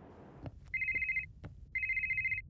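Mobile phone ringing: two short electronic trilling rings, each about half a second long and about a second apart.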